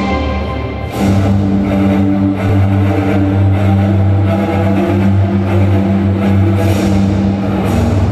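Background music; a deep, steady bass comes in about a second in and holds under the rest of the track.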